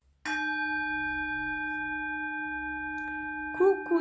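A brass singing bowl struck once, about a quarter second in, then ringing on with a steady low hum and several higher overtones that fade slowly. A voice starts just before the end.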